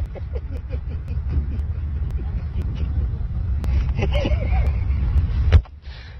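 A man's muffled, stifled laughter over a loud, uneven low outdoor rumble. A sharp knock comes near the end, and the rumble then drops away.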